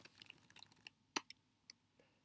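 A few faint, separate computer keyboard keystrokes, about half a dozen taps spread out and irregular, as the text cursor is moved back along a line of code.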